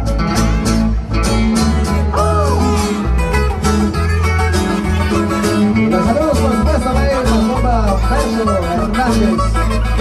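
Loud live band music played through large PA speakers: guitar over a steady, heavy bass line.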